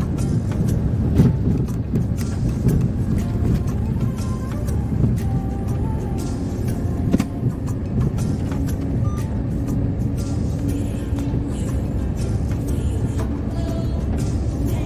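Steady drone of a truck's engine and road rumble heard inside the cab while driving on the highway, with music playing over it.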